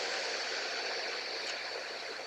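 Steady hiss of background noise with a faint high-pitched whine running through it, slowly easing off.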